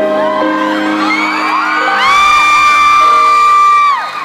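Fans screaming over a live piano intro: several short rising and falling shrieks, then one long high-pitched scream held for about two seconds that stops abruptly near the end.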